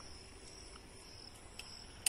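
Insects trilling steadily at a high pitch, faint, with one light tick about three-quarters of the way through.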